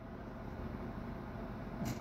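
Mastercarver micro motor handpiece running with a Kutzall taper burr cutting into cottonwood bark: a faint, steady hiss.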